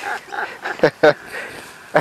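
A man laughing in short breathy bursts, with a few sharp catches of breath.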